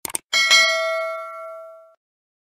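Two quick click sound effects, then a single bell ding that rings out and fades over about a second and a half: the notification-bell sound of a YouTube subscribe-button animation.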